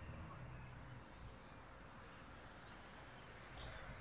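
Faint outdoor background noise, with a low hum that fades out about a second in and a run of short, high chirps over the first second and a half.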